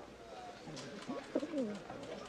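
A pigeon cooing, a few short gliding coos starting about a second in.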